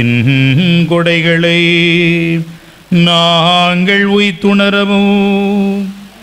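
A priest's voice chanting a prayer on long held notes: two sustained phrases with a short pause between them.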